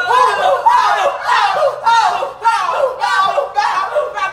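Several people shouting excitedly over one another in short, arching exclamations.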